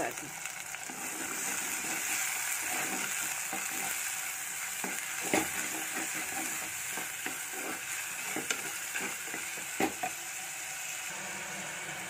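Prawns frying in hot oil with onions in a handi: a steady sizzle, with a wooden spatula stirring, scraping and knocking against the pot, the loudest knocks about five seconds in and again near ten seconds. The prawns are at the stage of frying until they curl.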